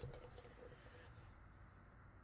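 Near silence: faint room tone, with one soft, faint knock right at the start.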